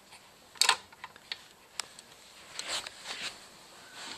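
Hard plastic baby play-gym toys clattering and clicking as the gym is moved into place, along with camera handling. The loudest sharp clatter comes about half a second in, a few single clicks follow, and a rustling clatter comes near three seconds.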